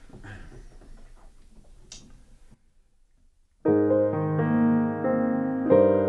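A grand piano begins a slow solo lullaby a little past halfway through, opening on a held chord, with a second chord struck near the end. Before it there is faint room noise and a moment of near silence.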